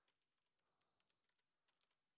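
Very faint keystrokes on a computer keyboard, a scattering of clicks near the start and a quick cluster near the end, with near silence in between.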